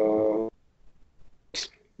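A man's voice holding a drawn-out hesitation sound, a steady 'eh', for under a second, then a pause broken only by a short hiss near the end.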